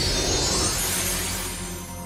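Magic sound effect: a shimmering, sparkling sweep rising in pitch over background music, fading toward the end.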